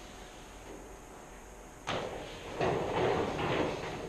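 Vertically sliding chalkboard panel being pushed up in its track: a sudden knock about two seconds in, then about a second of rumbling as the panel slides.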